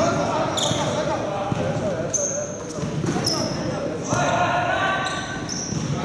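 Basketball game play echoing in a large gym: a ball bouncing on the hardwood-style court floor, sneakers squeaking sharply about four times as players cut, and players' voices calling out.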